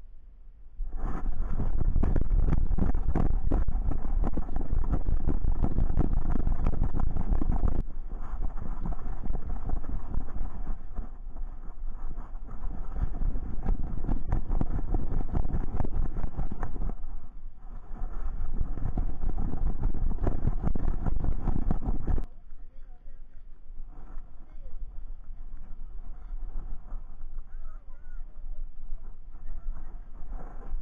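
Wind buffeting and rumbling on a dog-mounted action camera's microphone, with rustling and knocking as the dog moves. The noise is loud from about a second in and jumps abruptly in level a few times where the footage is cut, ending quieter.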